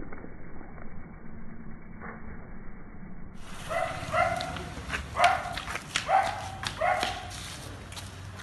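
Faint street noise, then a dog barking about five times in quick succession over some three seconds.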